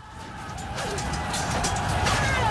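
Battle sound effects fading in from silence and growing louder: a deep, dense rumble with scattered crashes and clatter.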